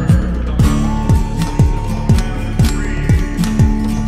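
Background music: a plucked and strummed guitar track over a steady kick-drum beat, about two beats a second.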